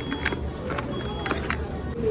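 Cosmetic boxes being handled in a shop display drawer: a few light clicks and taps of cardboard and plastic packaging. Under them runs a steady low rumble of shop background noise.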